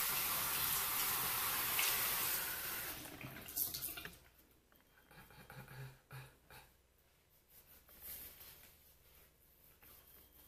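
Bathroom sink tap running for about four seconds, then turned off, as water is run to rinse off a clay face mask. After that, only faint scattered handling sounds.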